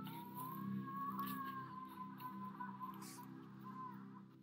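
A faint, long, slightly rising high wail, heard as distant screaming, over a low steady music drone.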